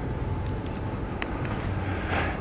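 Steady room tone of a seminar hall: a constant low hum under an even hiss, with one faint tick a little past a second in.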